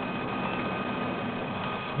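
Steady mechanical hum and hiss of office machines running, with a few faint steady tones.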